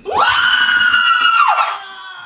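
A loud, high-pitched startled scream in a woman's voice: it rises quickly, holds steady for over a second, then falls off.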